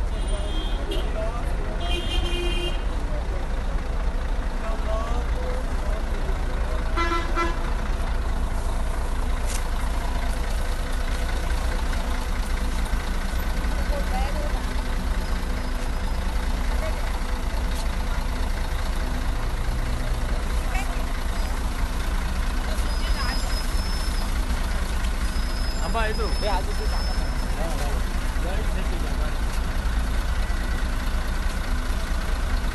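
A bus engine idling with a steady low rumble, with people's voices around it and a short horn toot about seven seconds in.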